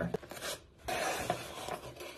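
A cardboard mailer box being opened by hand: a noisy rustle and scrape of cardboard and its paper seal, starting about a second in.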